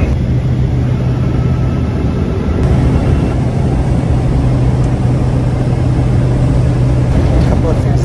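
Steady airliner cabin drone: jet engine and airflow noise with a constant low hum, unchanging throughout.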